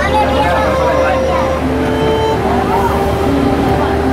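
Indistinct chatter of riverboat passengers over background music playing held notes that step in pitch, with a low steady hum underneath.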